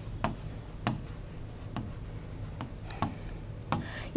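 A pen drawing on a writing board, with about six sharp taps and light scraping as the strokes are made.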